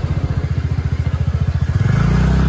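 A motorcycle engine idling close by with a fast, even putter, picking up to a steadier, louder note right at the end.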